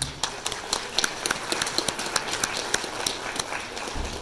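Audience applause: a dense, uneven patter of hand claps, with a few sharp claps close by standing out. It starts suddenly.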